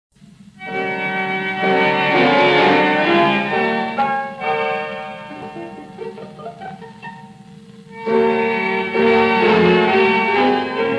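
Instrumental introduction of a 1932 tango-orchestra recording of a waltz, with violins carrying the melody. It starts about half a second in, eases into a softer passage in the middle and swells again about two seconds before the end.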